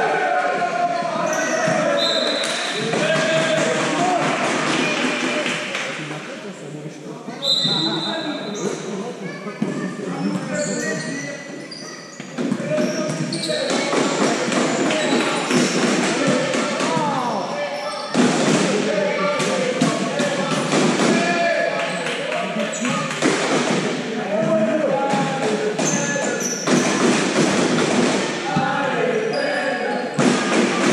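Handball bouncing on the sports-hall floor as players dribble during play, with players' shouts echoing in the large hall.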